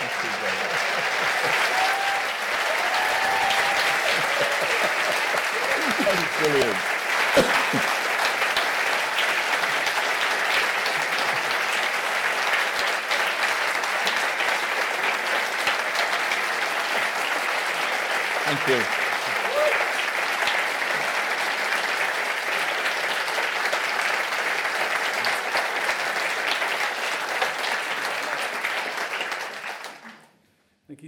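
Large audience applauding in a hall, a dense steady clapping that dies away at the very end, with a few voices heard through it.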